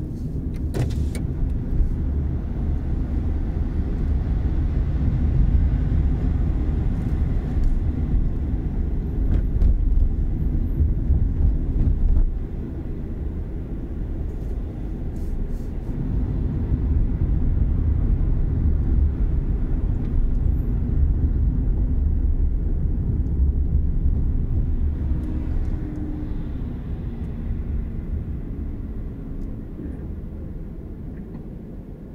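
Low, steady road rumble of a car being driven, heard from inside the cabin. It dips about twelve seconds in, swells again, and fades near the end as the car slows into a queue at a red light.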